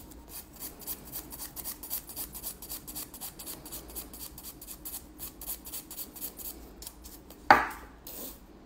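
A hand nail file (180 grit) rasping quickly back and forth over gel-coated fingernails, filing down the old coating at about five short strokes a second. One short, louder sound falls in pitch near the end.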